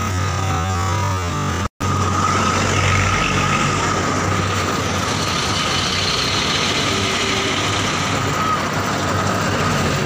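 Steady street noise with a constant hum and a steady high tone, cut off for a split second just before two seconds in.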